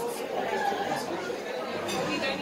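Background chatter of many people talking at once in a large dining room.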